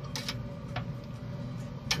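Metal grill tongs clicking a few times against the stainless-steel upper rack of a pellet grill as a tri-tip is set on it, over a steady low hum.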